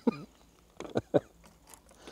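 Three light clicks and taps about a second in, from small things being handled: a motorcycle key ring and a pair of sunglasses.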